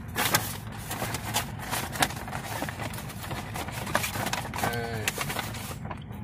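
Brown paper fast-food bag rustling and crinkling as a hand digs through the sandwiches inside, with irregular sharp crackles of paper.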